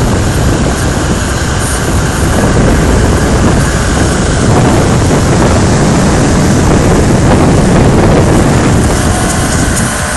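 Loud, steady rushing roar of a large waterfall close beside the road, heard from a moving car together with its road and engine noise. It swells a little in the middle as the car passes closest to the falls.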